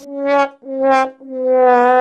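A 'sad trombone' comedy sound effect: brass notes stepping down in pitch, two short ones and then a long held note, the cue for a flop or failure.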